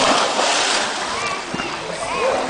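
A person plunging into a swimming pool off a slide: a big splash that is loudest in the first second and then settles into sloshing water.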